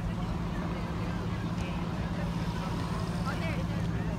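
Street ambience: a steady low hum of traffic, with faint, scattered voices of passers-by.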